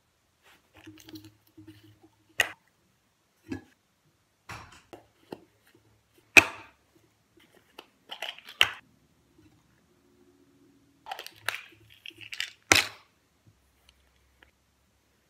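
Handling noise: irregular sharp plastic clicks and knocks, the loudest about two and a half, six and a half and nearly thirteen seconds in, with soft scuffing and rustling between.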